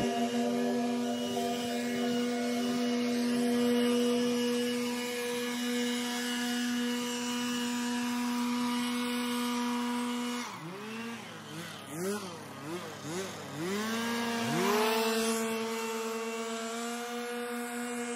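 Gas backpack leaf blower running steadily at high throttle. A little past halfway, the throttle is eased off and opened again four or five times, the engine pitch dipping and climbing back each time, before it settles back to a steady high speed.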